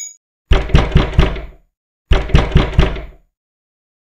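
Knocking on a door: two rounds of four quick knocks, the second round coming about a second after the first ends.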